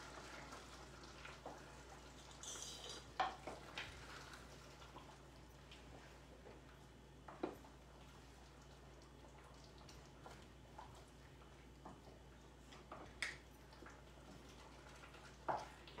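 Faint stirring of thick tomato sauce in a pan with a wooden spoon, with a few light scattered knocks over a low steady hum.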